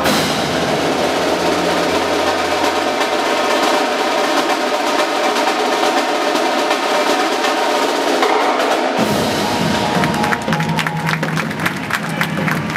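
Indoor drumline and front ensemble playing: snare, tenor and bass drums over mallet keyboards, with rolls. About nine seconds in the bass drums come in and a run of sharp, rapid drum strokes follows.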